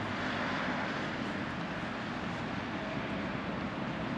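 Steady city background noise: a constant hum of distant traffic.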